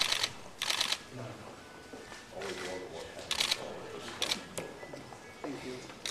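Camera shutters firing in several short rapid bursts, the clicks running together, over low voices in the room.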